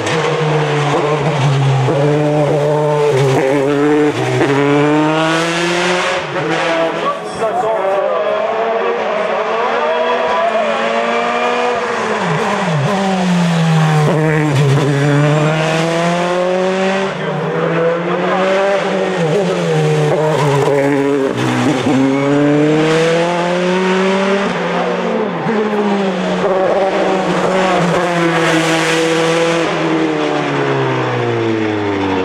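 Dallara F308 Formula 3 car's Mercedes four-cylinder engine at racing speed, its pitch climbing through each gear and then falling sharply on downshifts into corners, again and again.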